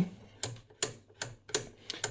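Front-panel rotary selector switch of a Rohde & Schwarz ESM 300 receiver turned by hand, clicking through its detent positions about three times a second, five clicks in all. The switch contacts are freshly cleaned with Kontakt 61 contact cleaner and it moves smoothly.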